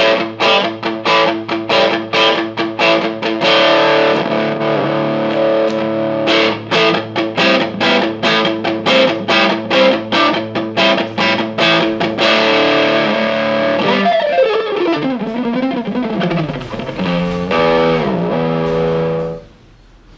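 Squier Affinity Stratocaster electric guitar being played: a quick run of struck chords and notes, a falling pitch glide about two-thirds of the way through, then a few held chords that stop just before the end.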